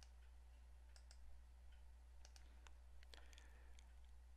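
Faint computer mouse button clicks, several scattered through and more frequent in the second half, over a steady low electrical hum.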